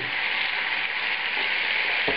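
Demi-glace and meat juices sizzling steadily in a hot frying pan as cream is poured into the pan sauce.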